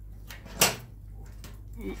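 A single sharp knock about half a second in, over a steady low hum, with a few faint ticks around it.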